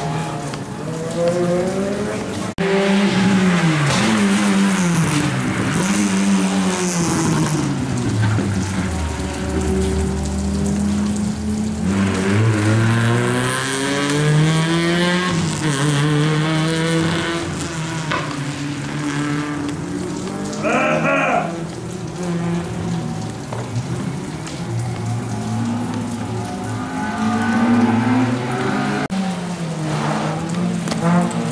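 Small front-wheel-drive rally cars, Peugeot 106s among them, driven hard past the camera: engines revving high, pitch climbing and dropping again and again through gear changes and lifts, over steady tyre noise. About two-thirds of the way through comes a short high-pitched burst.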